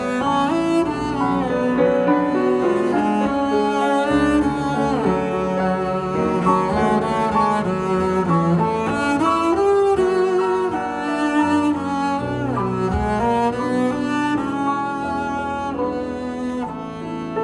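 Double bass bowed in a lyrical melody, with held notes and a few slides between notes, accompanied by a Bösendorfer grand piano.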